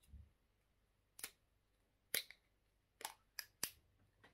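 Black plastic screw cap on a small hot sauce bottle being twisted open by hand, giving five sharp clicks as the seal cracks and the cap turns, the last three in quick succession.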